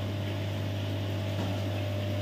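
Steady low electrical hum of running aquarium pumps and filtration equipment, with a faint higher whine above it.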